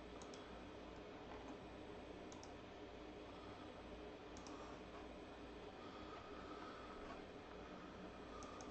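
Near silence, a steady low hiss broken by a few faint computer mouse clicks, each a quick pair.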